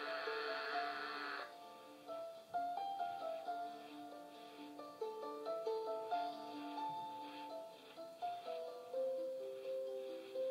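Documentary soundtrack music playing through a tablet's small speaker, a melody of held notes. A hissing noise runs over it for about the first second and a half.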